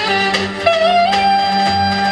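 Live saxophone playing a Roman havası dance melody over a steady low backing: a quick slide up into a long held note.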